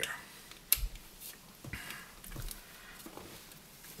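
Plastic wiring harness connectors being handled and pushed together, with one sharp click a little under a second in and a few fainter ticks and rustles of the loose wires.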